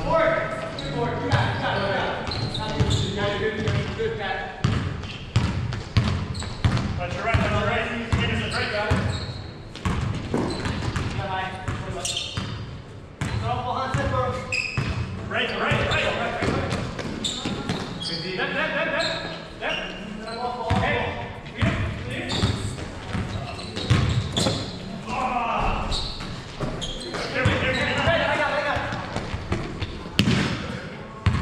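Basketball players calling out to each other, voices echoing in a large gym, with a basketball thudding on the hardwood floor as it is dribbled, over and over.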